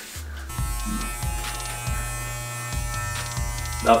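Corded electric hair clippers switch on about half a second in and buzz steadily, over background music with a low, regular beat.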